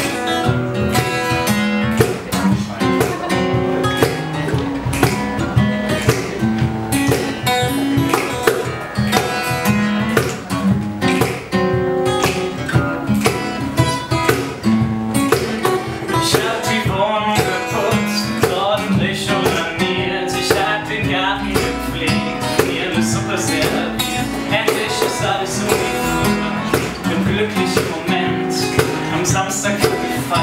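A small acoustic band playing live: two acoustic guitars strumming chords over a cajon and cymbal keeping a steady beat.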